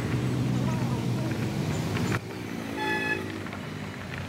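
A Kia Sonet SUV's engine running in a low steady hum as it moves off, then a short single horn toot about three seconds in.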